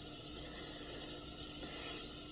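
Steady background hiss with a faint steady hum, and no distinct sound events.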